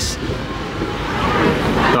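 Steady rushing noise of wind over the microphone on the open deck of a cruise ship under way, with a deep rumble underneath.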